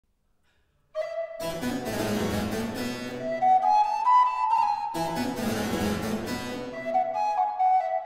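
Opening of a lively Baroque allegro in F major: a solo recorder melody over a basso continuo of harpsichord and cello. The music starts after about a second of silence, and the melody climbs to its highest note near the middle.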